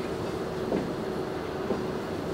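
Steady room noise in a pause between speech: an even hiss and hum with a faint steady tone, and nothing else standing out.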